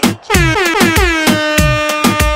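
DJ dance mix with a steady kick drum about four beats a second. About a third of a second in, a bright pitched tone slides down in pitch, then holds steady.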